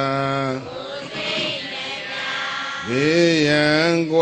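A Buddhist monk chanting in a man's voice, holding long steady notes: one note ends about half a second in, and after a short pause a new note rises in pitch near the end and is held.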